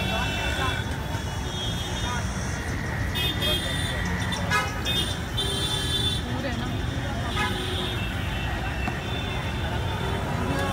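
Busy street noise of traffic, with several short vehicle horn toots and indistinct voices.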